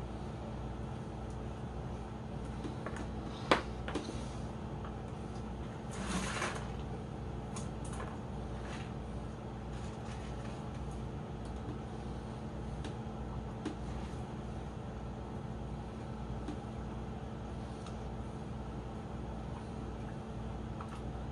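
Small aquarium air pump humming steadily under the fishbowl's airline. Light knocks about three and a half and four seconds in, and a short burst of rustling noise around six seconds, come from decorations being handled and dropped into a second bowl.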